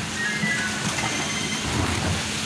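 Music with a steady low beat, about two beats a second, over a dense hissing background.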